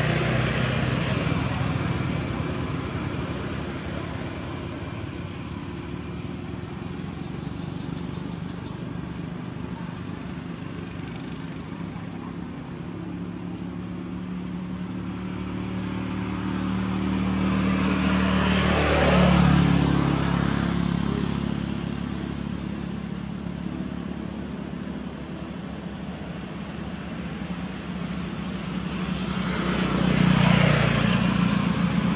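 A motor vehicle passing, its engine sound swelling to a peak about two-thirds of the way through and then fading, over steady background traffic; another vehicle approaches near the end.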